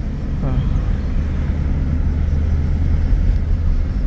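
Car engine and road noise heard from inside the cabin while driving, a steady low rumble.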